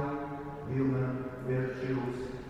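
A man's voice chanting in long, steady held notes that step from one pitch to the next.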